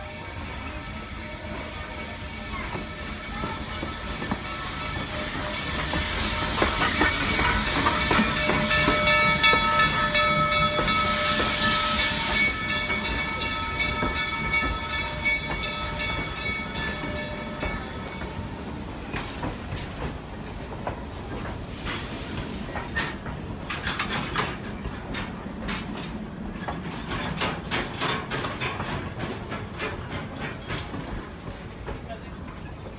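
Steam locomotive No. 110 passing close by. Hissing steam and running-gear noise build to a peak about ten seconds in, with a steady shrill squeal of several tones held for over ten seconds. Then the passenger coaches roll past with a run of regular wheel clicks over the rail joints.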